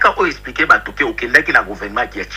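A man speaking continuously, with no other sound standing out.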